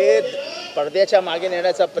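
A man speaking into press microphones, over a steady tone that runs beneath his voice.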